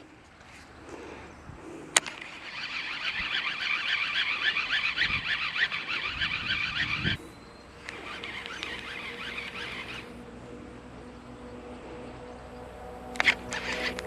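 Baitcasting reel being cranked on a retrieve. A single click comes about two seconds in, then a fast, even ticking whir runs for about four and a half seconds and stops suddenly. A second, quieter stretch of cranking follows about a second later.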